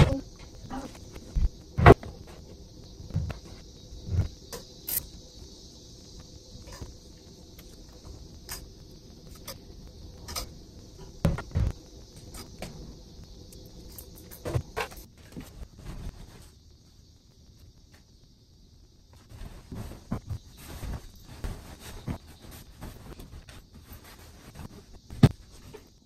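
Household handling noise as clothes are put away in a closet: scattered knocks and clicks from dresser drawers and hangers, with cloth rustling, over a faint steady hiss. A sharp loud click comes right at the start, and the sound drops to near silence for a couple of seconds about two-thirds of the way through.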